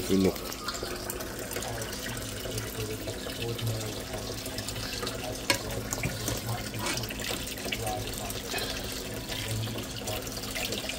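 Ackee and saltfish frying in a pan on the stove: a steady sizzle, with an occasional faint click from the pan.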